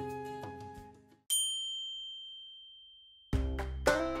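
Background music fades out, then a single bright chime ding about a second in rings on and dies away over about two seconds; new music starts near the end.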